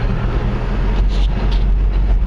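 Car in motion heard from inside the cabin: a steady low rumble of engine and road noise.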